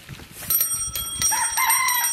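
A bicycle bell is rung a few times about half a second in and keeps ringing on a high, steady metallic tone. In the second half a rooster starts to crow over it.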